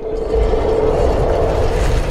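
A loud, steady rushing noise with a deep rumble and one held tone running through it.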